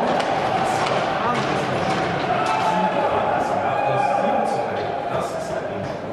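Ice hockey rink sound: indistinct crowd voices echoing in the arena, with irregular sharp knocks and clacks of sticks, puck and boards.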